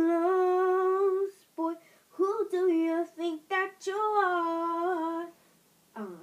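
A person singing unaccompanied, without clear words: long notes held on a steady pitch with a slight waver, in several phrases with short breaks. The last long note ends shortly before the end.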